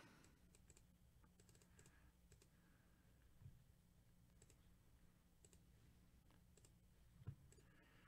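Near silence with faint, scattered clicks of a computer mouse and keyboard, one slightly louder click near the end.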